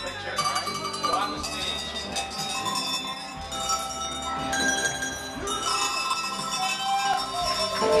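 A row of cowbells hung from a long pole, shaken so the bells ring together in a dense, clanging wash of tones, with folk band music.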